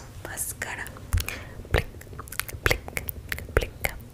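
A series of about ten sharp, irregular clicks and taps very close to the microphone, ASMR trigger sounds.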